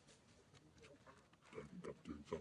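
Mostly near silence, then a few short low grunt-like sounds from a young macaque in the last half second.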